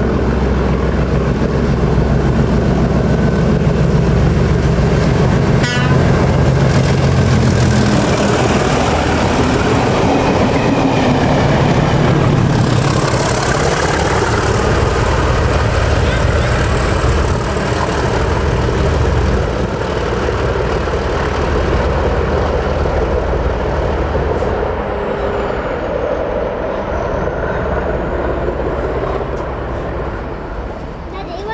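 Two Colas class 37 diesel-electric locomotives, 37219 and 37254, passing under power: the deep running of their English Electric V12 diesels with the rumble of the train on the rails. The sound is loudest in the first half as the train goes by and fades over the last few seconds as the rear locomotive draws away.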